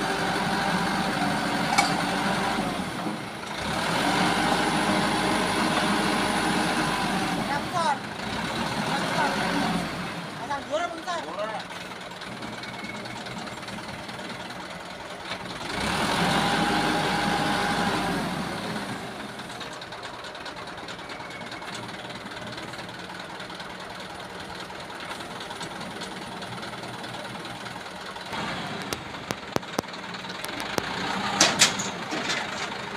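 Engine of a truck-mounted hydraulic auger drill rig running throughout, rising in speed and loudness for a few seconds three times, around the start, shortly after and about halfway through, then settling back to a steadier, quieter run. A few sharp metallic clinks come near the end.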